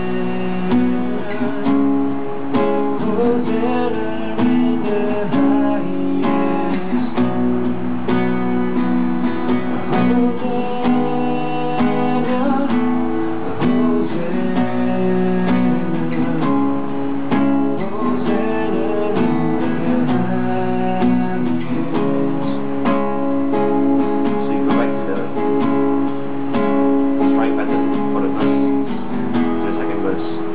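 Acoustic guitar strummed with a pick through chords in the key of E, in a down-down-down-up strumming pattern, with a man's voice singing along.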